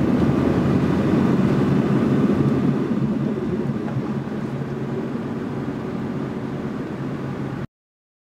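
Steady engine and tyre road noise heard inside a moving car's cabin, easing slightly from about three seconds in and cutting off abruptly just before the end.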